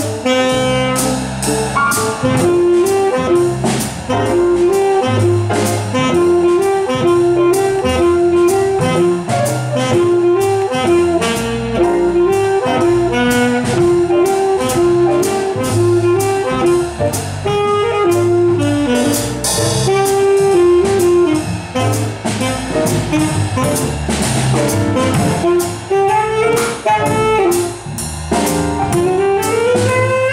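Live small-group jazz: an alto saxophone plays the melody over acoustic piano, upright double bass and a drum kit keeping a steady beat on the cymbals.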